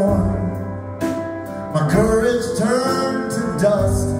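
Live band music: guitar, keyboards and drums, with a lead line holding long, bending notes.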